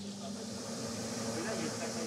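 Steady low machine hum with a faint hiss, from the suction truck's engine and vacuum pump running at the sewer lift station, ready to suck out wipes clogging the pipe.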